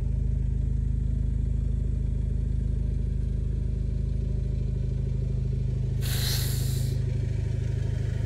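Car engine running steadily at low speed, a low even rumble, with a brief hiss about six seconds in.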